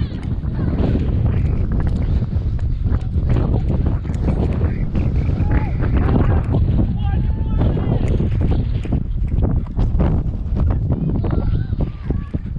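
Wind buffeting the microphone in a heavy low rumble, with footsteps and scuffs on rough rock as the camera wearer walks across a coastal rock platform. Faint voices come through now and then.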